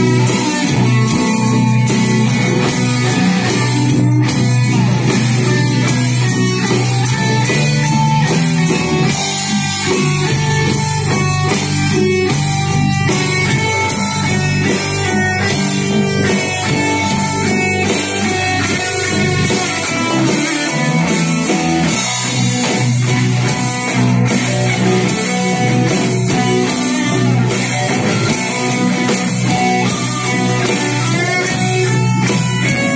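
Live rock band playing an instrumental passage, loud and steady: electric and acoustic guitars over a regular drum beat.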